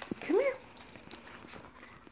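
Cat giving one short meow that rises in pitch.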